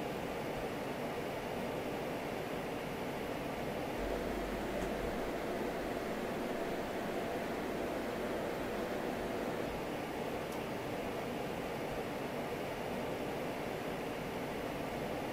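Steady whooshing fan noise from a Corsair One i500 gaming PC under load, its intake fans spinning at about 2000 RPM. The system is heard both with Noctua NF-F12 25 mm fans and with its stock 15 mm slim fans, and the two sound almost the same, at around 47 decibels. About four seconds in, the noise gets slightly louder and a low hum joins it.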